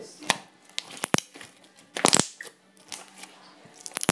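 Stretchy pink slime being pulled and squeezed by hand, giving sharp pops and crackles as it stretches and folds, with the loudest cluster of crackles about two seconds in.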